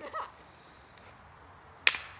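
A croquet mallet striking a ball once near the end: a single sharp crack.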